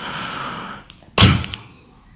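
A man's breathy exhale, followed about a second in by a short, loud, sudden vocal sound, such as a sharp 'hah'.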